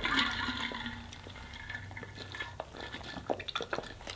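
Water being drunk from a bottle: faint sips and swallows with scattered small mouth clicks, mostly in the second half.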